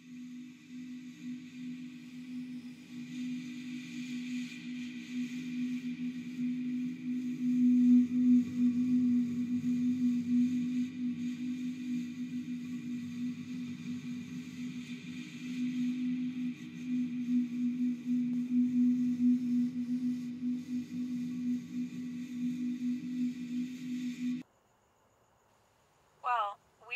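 Dark ambient drone of a horror film score: one steady low humming tone with a faint airy hiss above it, swelling over the first several seconds and then cutting off suddenly near the end.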